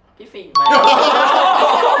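A group of people laughing and talking at once. About half a second in, a short ding-dong chime sound effect sounds, stepping down in pitch, as the laughter breaks out.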